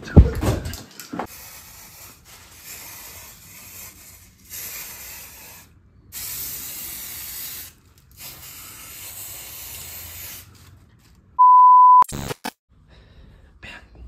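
A thump at the very start, then an aerosol spray can hissing in four separate bursts of one to two seconds each. About eleven seconds in, a loud steady beep lasts about half a second.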